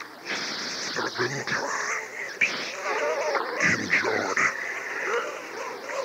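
Indistinct voices on a sermon recording: continuous speech whose words cannot be made out.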